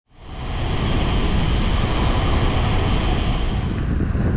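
Wind buffeting the microphone of a camera carried by a road cyclist riding at speed: a steady, dense rush with a strong deep rumble, fading in over the first half second.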